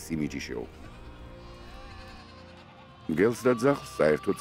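Sheep and goats of a flock bleating, with several loud wavering calls starting about three seconds in, over quiet background music.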